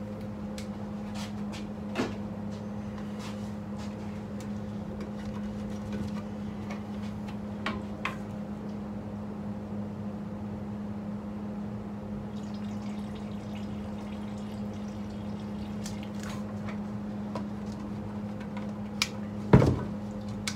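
Automotive clear coat, hardener and reducer being poured into a plastic mixing cup to mix four to one, with light clicks and knocks of the cup and cans and a louder knock near the end. A steady low hum runs underneath.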